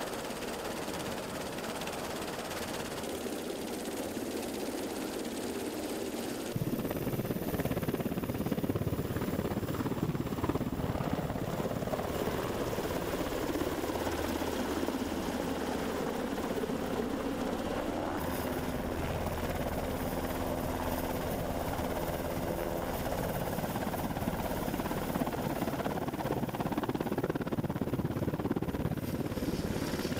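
UH-60 Black Hawk medevac helicopters running: steady rotor and turbine noise. The sound gets louder abruptly about six seconds in and changes character again abruptly at about eighteen seconds.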